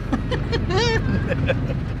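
Steady low rumble of road and wind noise inside the open-roofed cabin of a VW Beetle converted to electric drive, rolling along a street. A man laughs briefly a little under a second in.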